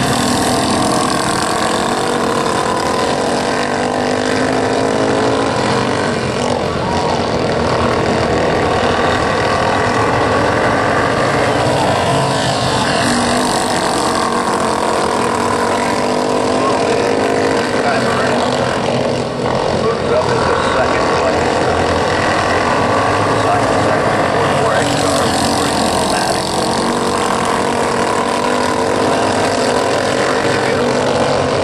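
Several micro sprint car engines running together at low speed under caution, their many overlapping notes rising and falling a little.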